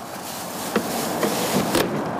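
A plastic bag crinkling and rustling as it is pulled over a gas pump nozzle: a steady crackly hiss with a few sharper crackles.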